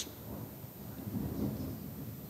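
Pause in speech with a faint low rumbling room noise picked up by the table microphone.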